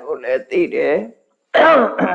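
A man speaking in short phrases, with a brief pause just past a second in.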